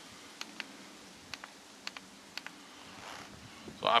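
Light clicks from a smartphone and a plastic lantern being handled, about five of them spread over the first two and a half seconds, over a faint steady background.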